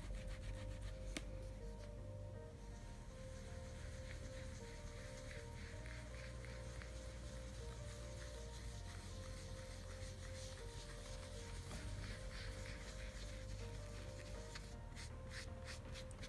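Round foam ink-blending tool rubbed in small circles on paper, laying on black Archival Ink with a soft, steady scratchy swish, with a run of quicker strokes near the end. Quiet background music plays under it.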